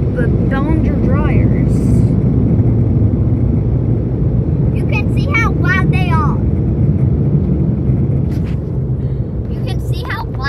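Car wash dryer blowers driving a loud, steady rush of air against the car, heard from inside the cabin.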